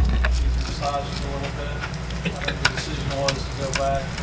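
Meeting-room sound: faint, indistinct voices in short snatches, with several sharp clicks and rustles over a low hum.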